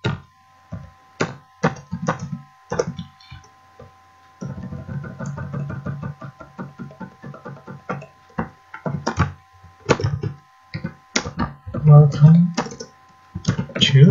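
Computer keyboard typing: irregular keystrokes, with a fast run of repeated key presses in the middle, over a faint steady hum.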